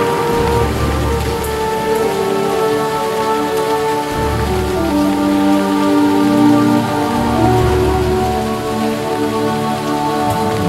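Steady rain falling under soft background music of long held notes that change every few seconds, with a deep bass note coming and going.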